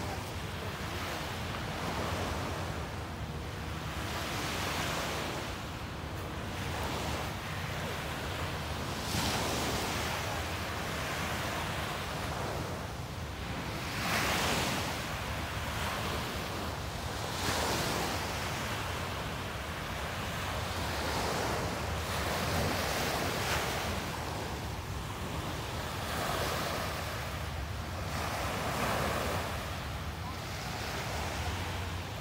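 Small sea waves breaking and washing onto a sandy beach, the surf swelling and falling back every few seconds, with wind rumbling on the microphone.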